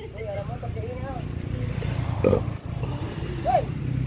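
Scattered short voice sounds over a steady low engine hum, like a vehicle running close by.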